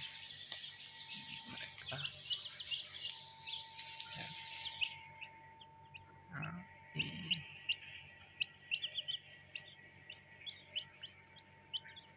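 Several young chicks peeping: a rapid run of short, high, downward-sliding cheeps that thins briefly about five seconds in, over a faint steady hum.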